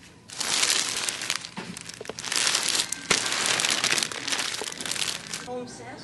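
Plastic wrapping on packaged bed pillows crinkling in several surges as it is handled and squeezed, with a sharp click about halfway through.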